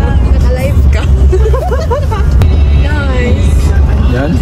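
Several voices talking over the steady low rumble of a moving car, heard from inside the cabin.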